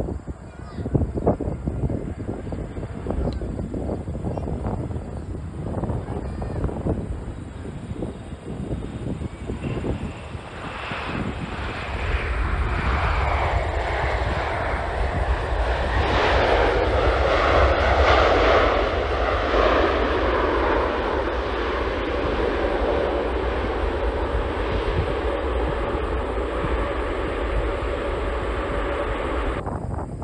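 Boeing 747 freighter's jet engines during landing: gusty rumble at first, then the engine noise builds to a loud roar about twelve seconds in as the jet rolls out on the runway, with whining tones that slide down in pitch, settling into a steady rumble.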